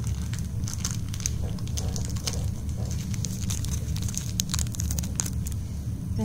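Irregular light crinkling and crackling, many small clicks at uneven intervals, over a steady low hum.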